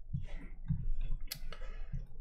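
A few short clicks and soft knocks close to the microphone, with one sharp click past the middle.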